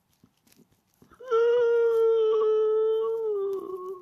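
A dog giving one long howl lasting about three seconds. It starts about a second in, holds a steady pitch and sags slightly in pitch near the end.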